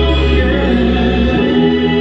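Gospel action song: voices singing over instrumental backing with a steady low bass note, which drops out about a second and a half in.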